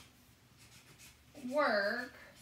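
A felt-tip marker stroking across chart paper as letters are written, with a short rising-and-falling vocal sound about a second and a half in.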